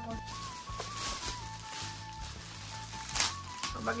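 Background music, a simple melody over a steady low bass, with crackling rustles of metallic foil gift wrap being torn open by hand, the loudest rustle about three seconds in.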